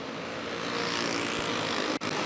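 Several winged box stock dirt karts' engines running together at racing speed: a steady buzzing drone with overlapping engine tones, a little louder from about half a second in.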